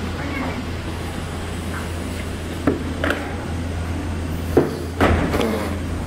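A steady low hum, with a few light knocks about halfway through and near the end, and faint voices in the background.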